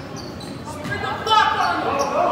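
Voices of players and spectators echoing in a school gymnasium, getting louder about a second and a half in, with short squeaks of sneakers on the hardwood court.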